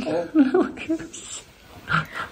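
A person's voice making short vocal sounds in the first second, then a soft laugh.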